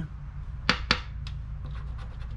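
A scratcher coin scraping and tapping on a lottery scratch-off ticket: two sharp short scrapes close together just under a second in, then a few fainter ones.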